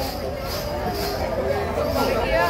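Several people talking at once, a steady babble of voices.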